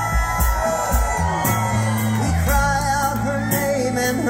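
A live band playing a slow song: electric guitars and drums, with long held melody notes that bend up and down over steady low notes and regular cymbal hits.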